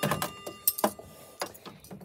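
Clinks and knocks of the metal chains and brass weights being handled inside a grandfather clock case: half a dozen sharp clicks over two seconds, with a faint ringing tone held under them.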